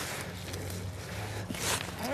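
Long-handled steel hosta trowel digging into soil and hosta roots: soft scraping, with a short crunch near the end, over a low steady hum.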